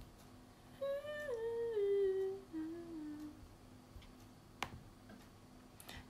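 A woman humming a short phrase that steps down in pitch, starting about a second in and fading after about two and a half seconds. A single sharp click follows near the end.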